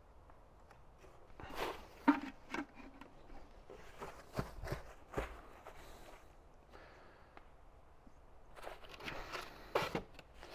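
Plastic packaging wrap rustling and crinkling in short spells as it is pulled back from around an auger drive in its box, with a few soft knocks and clicks in between.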